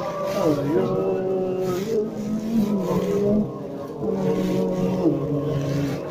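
Men's voices singing a wordless prayer tune in slow, long-held notes, the pitch dipping and sliding back up between notes.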